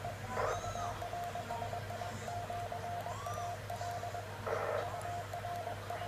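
Morse code (CW) tone keyed on and off in dots and dashes by a 2 m VHF transceiver set to 144.050 MHz in CW mode. Two short bursts of noise, about half a second in and near the end, and a few faint chirps sound over it.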